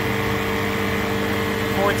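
Refrigerant recovery machine running steadily with a motor-and-compressor hum of a few fixed tones, pumping R-410A out of a mini-split into a recovery tank.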